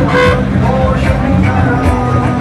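Loud amplified music playing from the float's sound system, with a held horn-like note at the start and a steady bass underneath.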